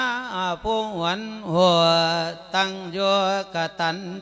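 A Thai Buddhist monk sings an Isan lae sermon: one male voice in a wavering, sliding melody with long held notes, broken by short pauses.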